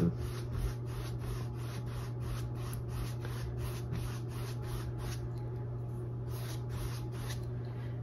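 Large filbert brush scrubbing black acrylic paint back and forth across a stretched canvas, in a steady rhythm of about four strokes a second that eases off about five seconds in. A steady low hum runs underneath.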